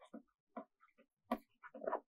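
Faint, short scratches and taps of a stylus writing by hand on a tablet, in quick uneven strokes, with a sharper tap about a second in.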